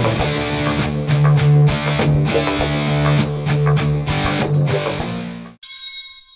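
Heavy rock music with electric guitar and drums, which cuts off abruptly about five and a half seconds in; a few thin bell-like tones start just after.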